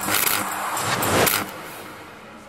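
Whoosh sound effect for an animated title sting: a noisy rush that builds for about a second and a half, then drops away suddenly.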